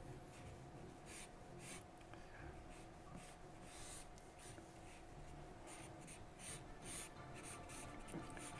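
Charcoal pencil scratching across smooth newsprint in short, irregular sketching strokes, faint, coming quicker in the second half.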